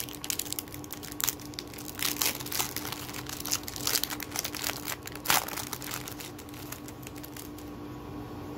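Foil trading-card pack being torn open and crinkled by hand, with irregular crackling that is loudest a little past five seconds in and dies down after about six seconds.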